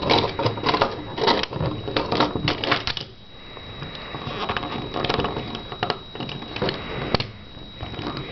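Plastic Transformers Animated Swindle action figure being handled and stood on a tabletop: quick clicking and clattering of its plastic parts for about three seconds, then scattered single clicks.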